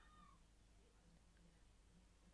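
Near silence: room tone, with a faint thin tone that slides slightly downward and fades in the first half-second.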